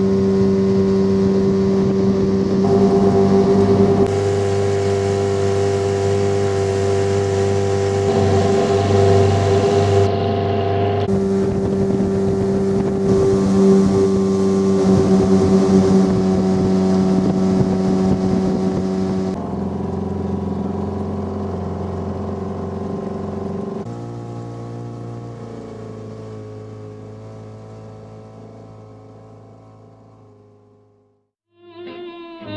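Boat's outboard motor running steadily at cruising speed, heard from on board. The tone changes abruptly several times and fades out near the end.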